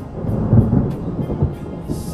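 A deep, loud rumble swelling up just after the start, loudest about half a second in and then easing off, over calm instrumental meditation music.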